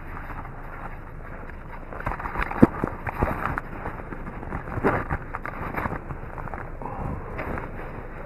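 Handling noise of a hand-held camera being moved about inside a parked car: rustling with scattered clicks and knocks, the sharpest a few seconds in.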